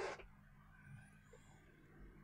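Near silence: faint room tone with a low steady hum, just after a voice trails off at the very start.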